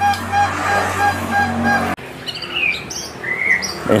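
A steady low engine hum with a short pitched beep repeating evenly about four times a second. After a sudden cut, several high, quick bird chirps and sweeping calls from caged songbirds.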